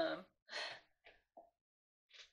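A woman's drawn-out "um", followed about half a second later by a short breathy exhale, then a couple of faint small sounds.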